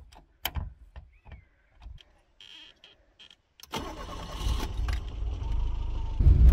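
A few scattered clicks and knocks, then about two-thirds of the way in the Lada Samara 1500's four-cylinder engine starts and runs, growing louder.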